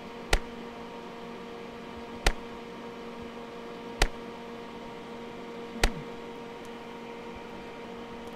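Four sharp clicks about two seconds apart, one with each manually triggered 50-microsecond RF pulse, over a steady electrical hum.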